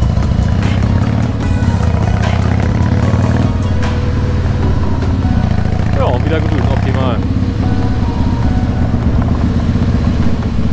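Harley-Davidson Heritage Softail Classic's V-twin engine running steadily under way while the motorcycle rides along, heard from the rider's seat.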